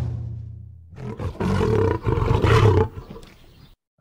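The last low note of a drum intro dies away, then a lion roar sound effect starts about a second in, lasts about two seconds and fades out.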